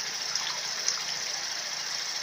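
Automatic transmission fluid pouring steadily out of the level-check plug hole in a GM 6L50 transmission pan and splashing down, the sign that the transmission is slightly overfilled.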